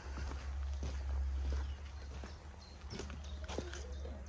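Footsteps on cobblestone paving, irregular short clicks, over a low steady hum.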